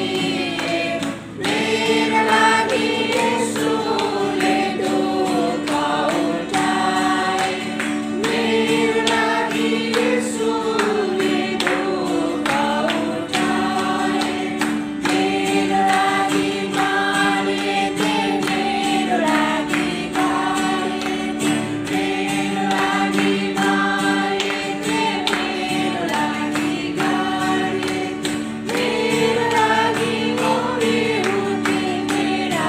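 A mixed group of men and women singing a Christian worship song together, with acoustic guitar accompaniment over steady held chords.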